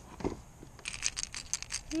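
A quick run of about ten sharp clicks and rattles in the second half, as a small redfish hooked on a lure is handled at the side of a kayak.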